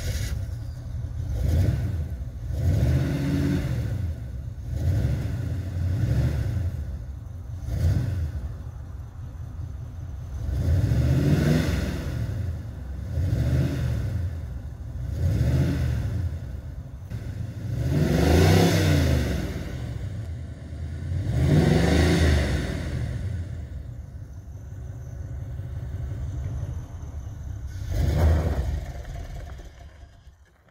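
1977 Chevrolet Camaro Z28's V8 running rough just after starting, revved in about a dozen throttle blips that rise and fall in pitch between low running. The engine cuts out at the very end.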